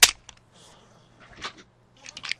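A few light clicks and knocks of wooden colored pencils being handled in a rubber-banded bundle. The sharpest click comes right at the start, with another about one and a half seconds in.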